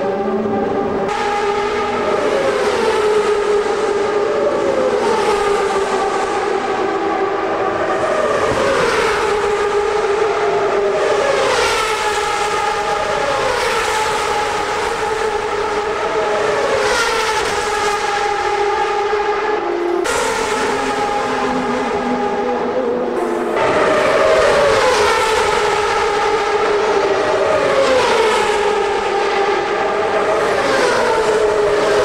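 CART Champ Cars with 2.65-litre turbocharged V8s passing at speed one after another, each a falling pitch sweep as it goes by, roughly one every one to two seconds, over a steady engine tone.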